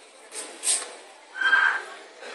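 Two short breathy hisses, then a brief high-pitched squeal-like vocal cry, the loudest sound, about one and a half seconds in.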